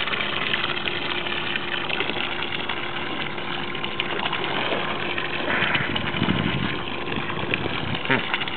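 A boat motor idling steadily, with water sloshing against the hull. Just past halfway there is a brief, louder rush of water.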